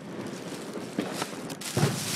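Close handling noise: rustling and a few soft knocks as fireworks packages are moved about right at the phone's microphone.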